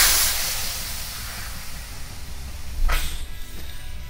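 A sudden rush of compressed air from an inflator pressed onto the valve of a tubeless mountain-bike tyre, loud at first and hissing away over about three seconds as the tyre fills. A short sharp sound comes about three seconds in.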